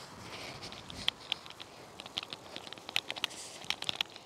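Faint, irregular light clicks and crackles over a soft hiss, with no steady motor whine.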